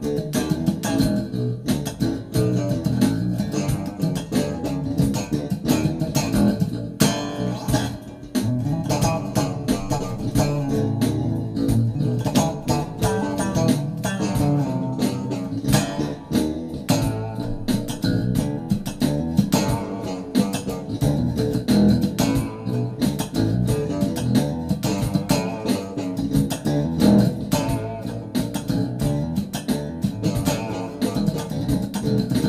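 Four-string electric bass guitar played fast in funk slap style, with a dense run of sharp, percussive thumb slaps and popped notes. It drops off briefly about eight seconds in.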